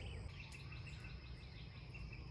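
Quiet outdoor background: a faint steady low rumble with faint, steady high insect trilling.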